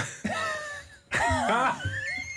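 Several men's voices laughing and exclaiming over one another, starting suddenly.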